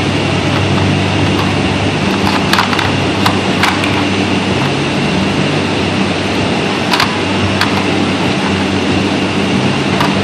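A steady, loud hum with a noisy hiss runs throughout, from a machine or ventilation in the room. Over it come a few sharp plastic clicks and clacks as the dog puzzle's tiles and pegs are nosed and pawed: a cluster between two and a half and four seconds in, and two more around seven seconds.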